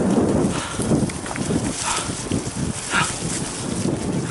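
Giant Trance full-suspension mountain bike rolling fast down a leaf-covered dirt singletrack: tyres running over dry leaves and bumps, with the bike and its handlebar-mounted camera rattling in an irregular clatter of knocks.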